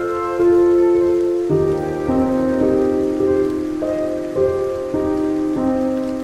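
Slow, calm music of held notes that change pitch every second or so, laid over steady rainfall. The music is the louder part, with the rain a constant hiss beneath it.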